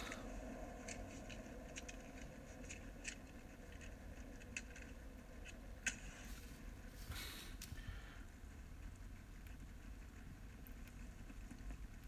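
Quiet room with a low steady hum and a few faint clicks, plus a brief soft scrape about seven seconds in: handling noise as the painted plastic model is moved close to the phone.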